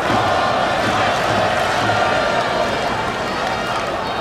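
Baseball stadium crowd: a steady wall of many voices cheering and chanting.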